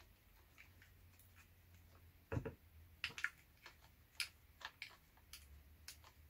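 Faint scattered clicks and light ticks of a DSLR camera being turned by hand onto a mini tripod's ball-head screw mount, with one duller knock a little over two seconds in.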